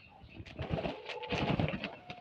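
A bird's low cooing call, held for about a second in the middle, over scattered clicks and rustling.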